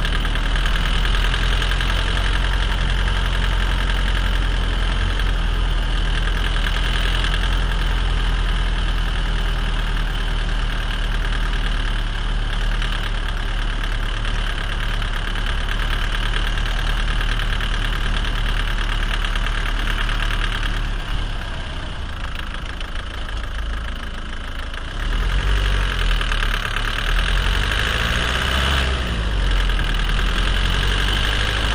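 Renault Mégane 1.5 dCi four-cylinder diesel engine running steadily, heard from beneath the car by the turning driveshaft. About two-thirds of the way through it drops in level for a few seconds, then comes back up.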